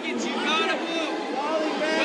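Several people's voices calling out at once over steady crowd chatter, with no clear words coming through.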